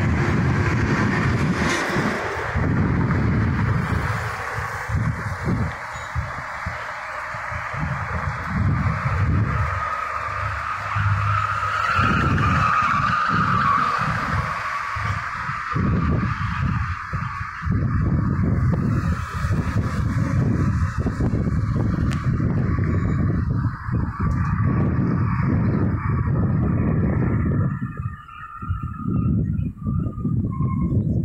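Road traffic on a multi-lane avenue: cars, pickups and a minibus driving by below, with a steady rush of tyre noise that swells about twelve seconds in. Gusty wind rumbles on the microphone throughout.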